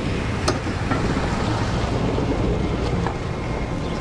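Thomas school bus engine idling, a steady low rumble, with wind noise on the microphone and a couple of light clicks.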